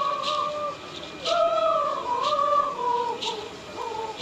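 A chanting voice holding long notes that waver and step slightly in pitch. A short rattle stroke comes about once a second.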